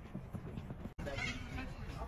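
Voices of players calling out across a football pitch over a steady low rumble of wind on the microphone. The sound cuts out completely for an instant about a second in.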